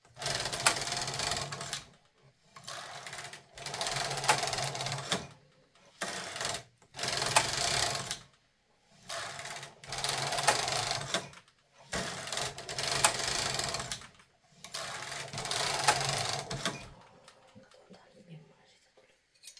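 Carriage of a Brother KH-230 knitting machine pushed back and forth across the needle bed, knitting row after row. Each pass is a mechanical clatter of one to two seconds, starting with a sharp click, with short pauses between passes, about seven in all.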